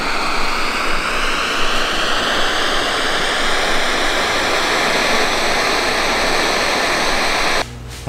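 MSR Pocket Rocket 2 canister stove burner running with a loud, steady hiss under a steel pot of water at the boil, the fuel turned only partway up. The sound cuts off suddenly shortly before the end.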